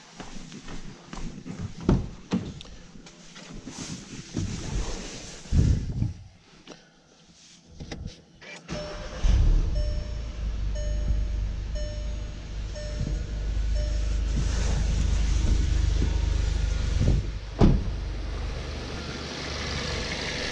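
A 2017 VW GTI's 2.0 TSI four-cylinder starts about nine seconds in and settles into a steady idle, the first start after the fuel system was opened for a flex fuel kit. Short, evenly spaced warning chime beeps sound for a few seconds just after it catches. Before that come scattered knocks and thumps as the driver's door is opened and someone climbs in.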